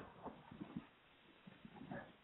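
Near silence on a voice call line that is breaking up, with faint, short, choppy fragments of sound.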